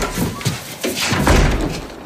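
A door being shut with a slam and a heavy thud.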